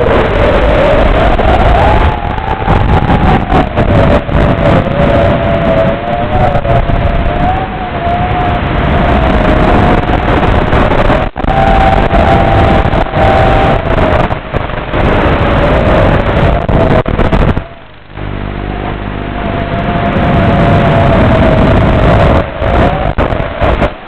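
Micro FPV quadcopter's brushless motors whining under a loud rushing hiss, the pitch wandering up and down with throttle. There is a sharp click about eleven seconds in, and the motor sound drops away briefly near the end before it comes back.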